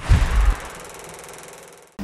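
A single logo-sting sound effect: a sudden hit with a deep boom, its bright ringing tail fading away over about a second and a half.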